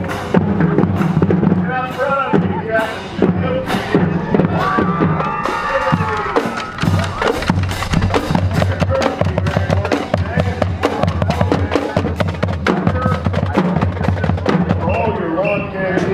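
Marching band drumline playing a cadence on snare and bass drums, a steady stream of drum strokes, with spectators' voices mixed in.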